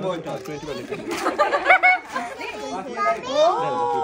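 Speech: adults and children talking over one another, with a drawn-out voice near the end.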